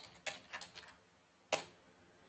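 Computer keyboard being typed on: a few separate keystroke clicks, the last and loudest about a second and a half in.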